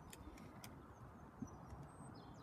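Near silence: faint outdoor ambience with a few faint ticks.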